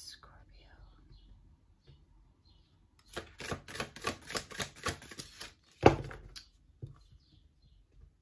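Magdalene Oracle cards being shuffled by hand: a fast run of card slaps, about five or six a second, lasting some two and a half seconds from about three seconds in, followed by a single loud thump.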